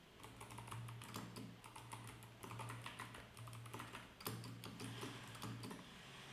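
Typing on a computer keyboard: quick, irregular keystrokes as code is entered.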